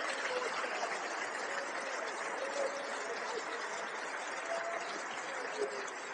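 A large congregation praising and praying aloud all at once, a steady wash of many overlapping voices with no single voice standing out.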